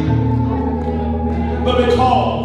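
Gospel singing over steady held instrumental chords during a church service.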